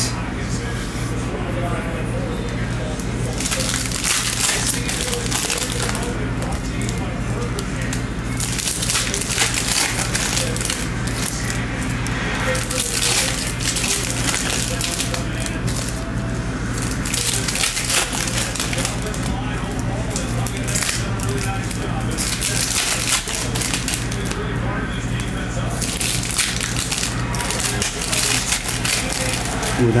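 Foil wrappers of Bowman Chrome trading-card packs crinkling and tearing as packs are opened and the cards handled, in several short bursts of crackle a few seconds apart over a steady low hum.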